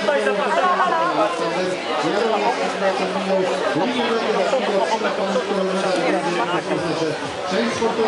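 Several people talking at once, their voices overlapping into a steady chatter with no single speaker standing out.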